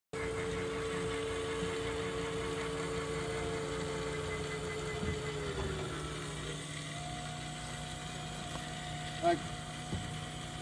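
Steady electrical hum and whine in a small aircraft cockpit with the engine not yet running. A whine drops in pitch about halfway through, and a higher steady tone takes over a little later. A brief voice sounds near the end.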